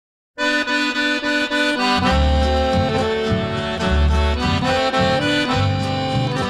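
Chamamé music: the instrumental opening of a track, led by accordion playing rhythmic chords and melody. It starts about a third of a second in, and low bass notes join about two seconds in.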